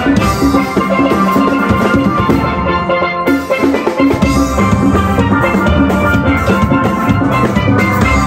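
Steel band playing a tune on steelpans with drums keeping the beat; the bass thins out for a few seconds and returns fuller about halfway through.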